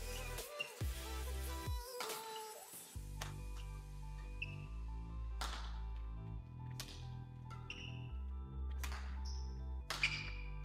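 Background music with a steady bass line, over which several sharp hits of badminton rackets striking a shuttlecock ring out a second or two apart during a rally.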